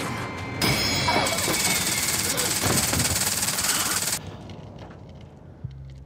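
Horror-film soundtrack: a loud burst of harsh noise across all pitches lasts about three and a half seconds, then drops away, and a low steady hum comes in near the end.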